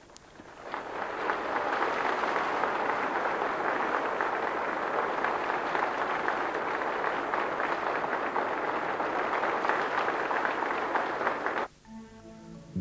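Audience applauding: dense clapping that swells over the first second or two, holds steady, and is cut off abruptly near the end.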